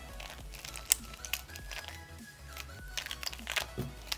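A Square-1 puzzle being turned by hand: an irregular run of sharp plastic clicks as its layers are twisted and sliced through an algorithm, over soft background music.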